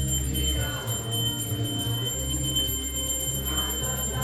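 Devotional kirtan music: metal hand cymbals ring steadily over a sustained low drone. Brief pitched passages, likely a voice, come in about half a second in and again near the end.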